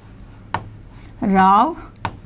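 Pen tapping and scratching on an interactive display board as words are written on it, with a sharp tap a little after half a second in. A brief woman's voiced sound, louder than the writing, comes near the end.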